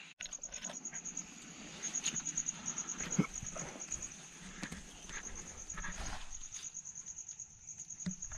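A night insect calling in a high-pitched trill of fast, even pulses, about ten a second, in bursts with short gaps. Scattered rustles and knocks of handling run under it as the camera is moved over rocks.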